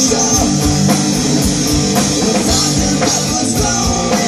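Live rock band playing on a concert stage: electric guitars, bass and a drum kit, with steady, regular drum and cymbal hits.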